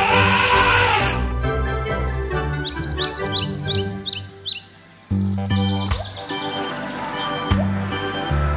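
Background music with bird chirps over it through the first half, a whoosh about a second long at the start, and deeper bass notes coming in about five seconds in.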